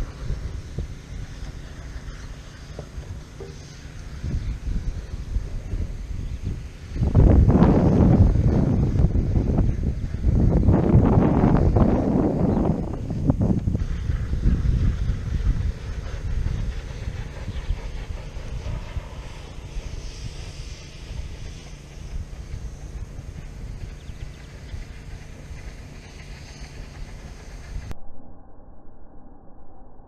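Wind buffeting a small action camera's microphone, a steady low rumble that swells into a much louder gust for several seconds in the middle and then eases off.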